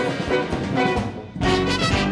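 Live jazz-rock big band playing loud accented ensemble figures: trumpets, trombone and saxophones over drums and electric bass. The band drops out briefly about a second in, then comes back in together, in the closing bars of a tune.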